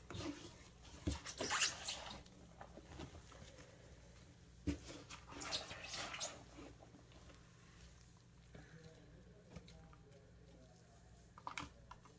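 A gloved hand rummaging through moist worm-bin bedding of castings, shredded cardboard and dead leaves, rustling and crackling in two short bursts: one near the start and one around five seconds in. Quieter, with a few light clicks, after that.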